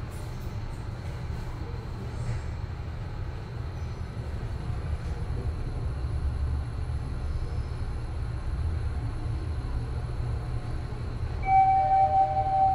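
Hyundai passenger elevator car running upward, a steady low rumble, with a two-note arrival chime near the end.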